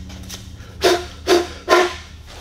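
Inner plastic pipe of a concentric vent sliding out of the outer pipe, in three short rubbing squeaks about half a second apart, over a steady low hum.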